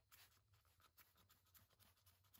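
Near silence, with a few very faint ticks.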